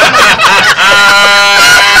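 A group of people laughing, with one drawn-out, high-pitched laughing cry held for about a second in the second half.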